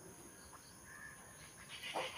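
Quiet outdoor background with one faint, short animal call about halfway through.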